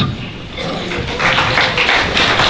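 Audience applause in a hall, starting thinly and building about a second in after a speech ends.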